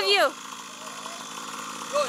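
Child's mini dirt bike motor running steadily at low speed.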